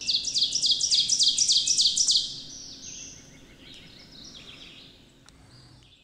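A songbird singing a fast run of repeated high notes, each sliding down in pitch, loud for about two seconds. Fainter bird song follows and fades out at the end.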